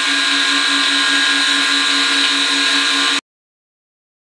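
Acer Supra-618II surface grinder running with a diamond wheel on its spindle: a steady whine of several held tones over a hiss, with a low hum that pulses several times a second. The sound cuts off abruptly a little after three seconds in.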